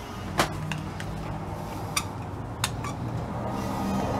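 A thin metal rod clicking and knocking against the inside of a small metal vacuum check valve as it is worked through the valve by hand: a handful of sharp clicks, the loudest about half a second in, others around two seconds and near three seconds, over faint background music.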